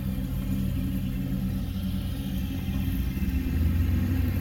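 Steady low motor hum, like a vehicle engine idling, swelling slightly near the end.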